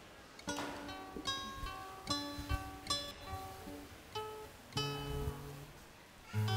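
Acoustic guitar playing the opening of a song, its notes starting about half a second in.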